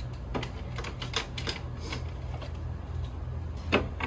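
Small items knocking and clinking as they are handled in an open mini fridge: a few light knocks, then one sharper knock near the end, over a steady low hum.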